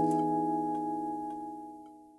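The last chord of the closing music, held and ringing like a bell, slowly fading out.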